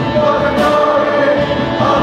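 A worship team and congregation singing a praise song together, the lead voices amplified through microphones, with music running on without a break.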